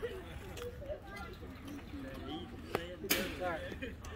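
People talking in the background, with a single sharp knock about three seconds in as a pitched baseball reaches the plate and drops in the dirt by the catcher.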